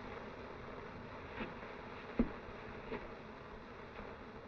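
Steady hiss of an early-1930s optical film soundtrack, with three faint short sounds well spaced out, the middle one the loudest.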